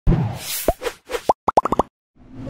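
Cartoon-style logo sound effects: a thump and whooshes, then a quickening run of six or seven short rising bloops.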